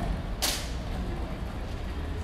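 Street ambience with a steady low rumble from a delivery van driving away ahead, and a short sharp hiss about half a second in.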